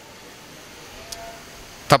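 A pause in a man's speech: faint steady background noise with a single small click about a second in, then the man's voice resumes right at the end.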